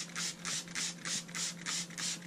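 Trigger spray bottle squeezed over and over, about three quick sprays of water a second, each a short hiss of mist.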